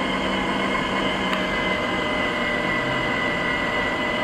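A moving vehicle running steadily, its motor and road noise carrying a steady high whine, with a single faint tick about a second in.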